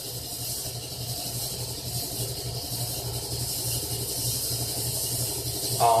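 Steady low hum with an even hiss over it, the background drone of refrigerators and a fish tank running.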